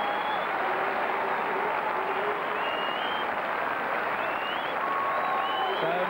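Stadium crowd applauding and cheering steadily, with a few high calls rising above the clapping.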